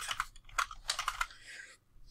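Computer keyboard being typed on: a quick run of individual key clicks over the first second and a half, then stopping.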